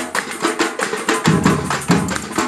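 Live carnival batucada drum ensemble playing a fast samba rhythm: dense, rattling snare-drum strokes with deep bass-drum beats recurring about every half second to second.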